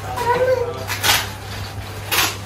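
A short high, gliding vocal sound, then about a second in a loud rustle of gift-wrapping paper being crumpled.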